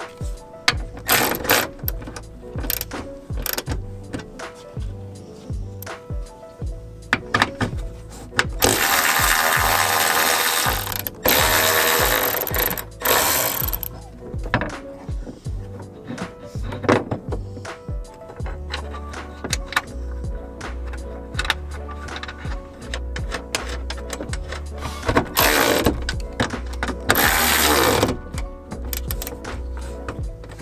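Background music with a steady beat, over repeated metallic clicks and ratcheting from a hand ratchet working the hood hinge bolts loose, with a few longer bursts of rapid ratcheting.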